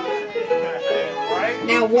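Fiddle playing a lively dance tune for country dancing, its melody moving in steady, held notes. A voice joins near the end.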